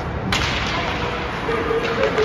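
A sharp crack of ice hockey sticks striking the puck and ice at a faceoff about a third of a second in, echoing in the rink, with a lighter knock near the end.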